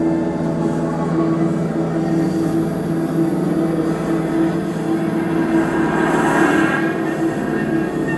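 Live experimental industrial drone music: a dense, steady layer of many held electronic tones, with a pulsing low tone underneath. A swell of higher, hissing noise rises about six seconds in and then fades.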